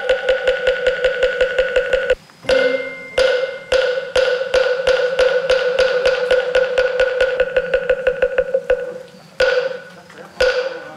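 Moktak (Korean Buddhist wooden fish) struck with a wooden mallet in quick, even runs of pitched wooden knocks. There are short breaks about two and three seconds in, then a long run that speeds up and stops near nine seconds, followed by a single stroke.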